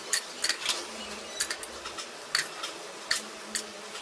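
Oreo biscuits being snapped by hand into small pieces, giving about eight sharp, irregular cracks as the bits fall into a plastic blender jar.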